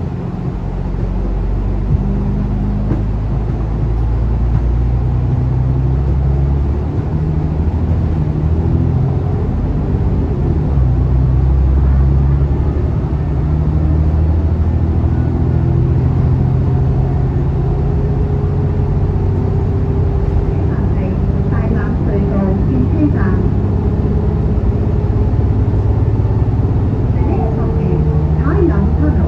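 Interior drone of a moving Alexander Dennis Enviro500 Euro 5 double-decker diesel bus heard from the lower deck: steady low engine hum and road noise, its pitch shifting up and down a few times as the bus changes speed.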